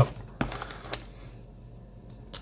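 Ontario RAT folding knife blade slitting the plastic wrap on a cardboard trading-card box. Two sharp clicks, about half a second and a second in, with light scratching between them.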